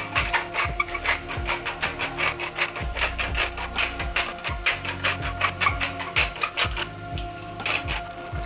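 Wooden pepper mill grinding black pepper: a fast, even run of crunchy clicks, about six a second, from the ratcheting grinder. Background music plays underneath.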